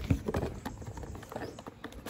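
Cardboard packaging handled by hand: a scatter of light, irregular taps and scrapes as the flaps and inner boxes of a piston-kit carton are opened.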